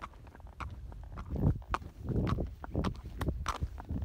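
Hooves of a Tennessee Walking Horse clip-clopping on a paved road at a walk, a run of sharp, unevenly spaced hoofbeats over a low rumble.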